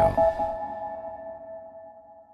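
Tail of a radio programme's ident jingle: a held chord of a few steady electronic tones, fading out over about two and a half seconds.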